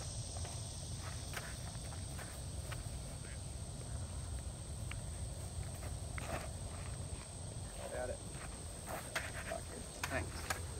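Steady high-pitched insect trill over quiet outdoor ambience, with a few faint footsteps and faint distant voices.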